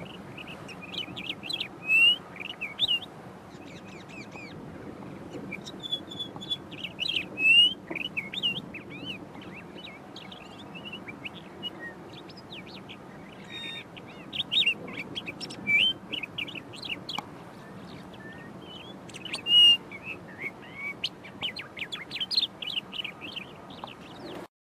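Eastern clapper lark singing a fast, varied run of short chirps and slurred whistles, mimicking the calls of other birds rather than giving its usual flight-display whistle. A few notes stand out louder, over steady low background noise.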